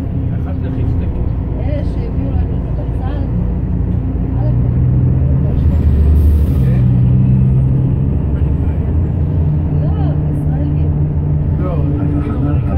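Steady engine and road rumble of a moving bus heard from inside the passenger cabin, its engine tones shifting in pitch. About six seconds in, the sound swells louder with a brief hiss.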